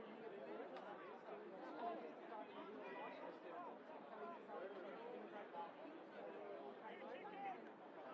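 Faint, indistinct chatter of several people talking at once, with no clear words.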